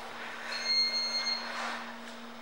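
A steady low hum, with faint thin high-pitched tones for about a second in the middle.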